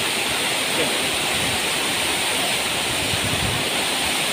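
A large waterfall plunging down a rock cliff into a pool: a steady, loud rush of falling water.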